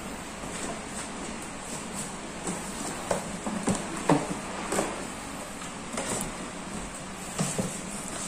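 Rustling, soft knocks and clicks of a polyester Oxford insulated delivery bag being handled and opened by hand, with scattered short knocks every second or so over a steady background hiss.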